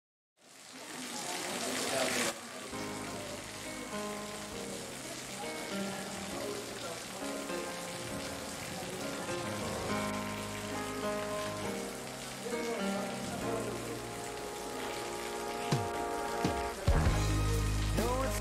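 Heavy rain pouring onto paving, fading in and then running steadily under background music with held notes that comes in about two seconds in. The music grows louder and fuller near the end.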